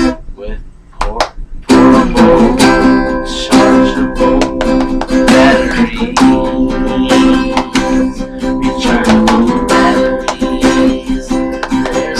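Acoustic guitar strummed in chords. The playing breaks off briefly just after the start and picks up again under two seconds in, then carries on steadily.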